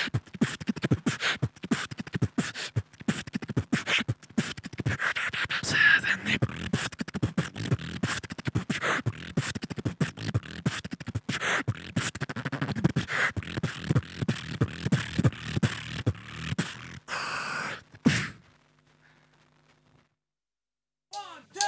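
Solo human beatboxing into a handheld microphone: fast mouth-made drum strokes, kick, snare and hi-hat-like clicks, in a dense rhythm. A short held sound comes just before it stops abruptly about two seconds before the end.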